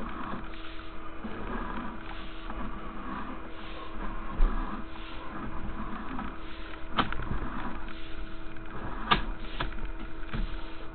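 Sewer inspection camera's push cable being pulled back out of the line, a rustling mechanical sound with a thump midway and two sharp clicks near the end, over a steady hum.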